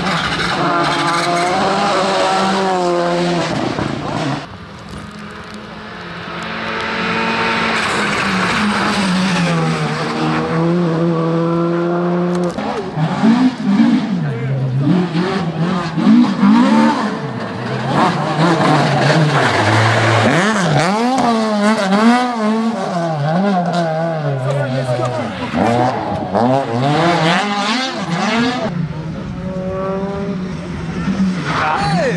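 Rally cars passing one after another on a stage, their engines revving hard and falling away repeatedly as they change gear and brake for corners.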